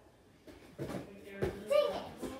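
Two dull thumps of hands and feet landing on a folding gym mat during a cartwheel, followed near the end by a brief vocal sound from the child, the loudest thing heard.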